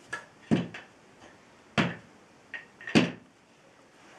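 Hollow wooden knocks as the painted halves of a wooden nesting doll are handled and clacked together: three louder knocks about a second or so apart, with a few lighter clicks between.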